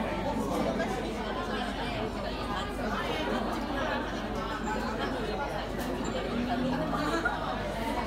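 Steady babble of many diners talking at once in a busy restaurant dining room, with no single voice standing out.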